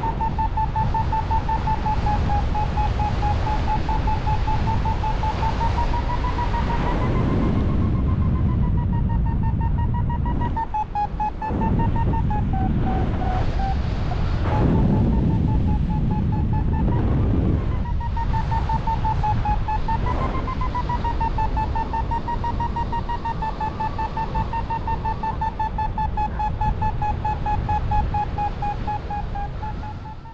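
Paragliding variometer beeping quickly at about 1 kHz, its pitch rising and falling a little with the climb rate as the glider climbs in lift. Heavy wind noise on the microphone runs underneath and swells in a few gusts around the middle.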